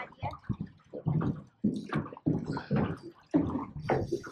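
Water sloshing and slapping against the hull of a small boat in short, irregular splashes.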